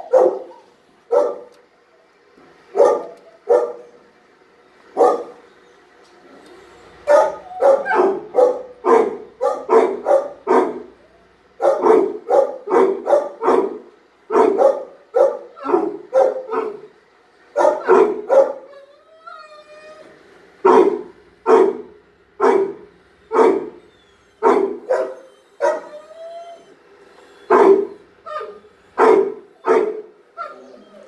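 Dogs barking over and over, single barks and quick runs of several. A short wavering whine comes just past the middle.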